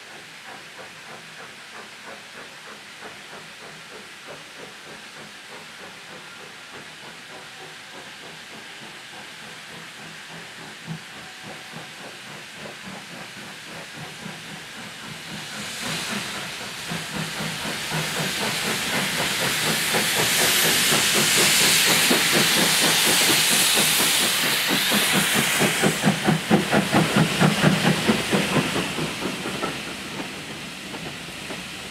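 Steam locomotive working a passenger train, heard faint and rhythmic at first, then drawing closer and passing. From about halfway in the exhaust beats and a loud steam hiss build up to a peak. Near the end heavy rhythmic beats come as the engine and the coaches roll by.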